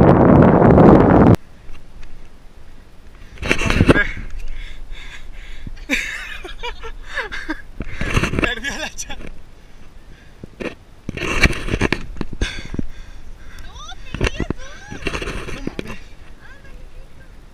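Wind buffeting the camera microphone, loud for about the first second and then cutting off abruptly, followed by about five short bursts of voices over lighter wind.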